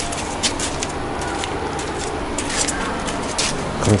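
Steady outdoor background noise with scattered light clicks and rustles.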